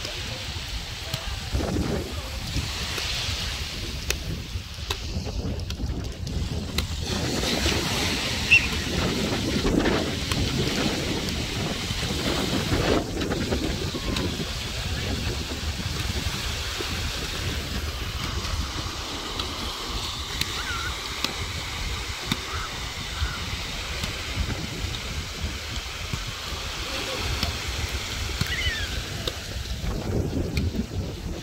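Wind buffeting the microphone over the wash of small waves on a beach, with water sloshing and splashing as people wade and lunge through shallow surf. A single sharp slap stands out about eight seconds in.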